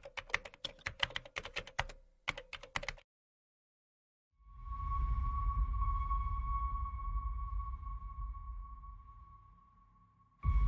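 Rapid keyboard-typing clicks for about three seconds, a sound effect for on-screen text being typed out letter by letter. After a second of silence, a low rumbling drone with a steady high tone swells in and slowly fades away near the end.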